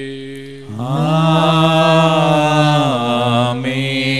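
A male voice chanting a sung liturgical prayer of the Syro-Malabar Mass in Malayalam, holding one long note for about three seconds from just under a second in.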